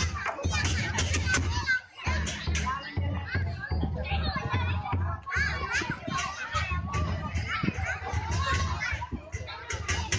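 Lion-dance drum and cymbals beating in quick repeated strokes, with a dense crowd of voices over them, many of them children's.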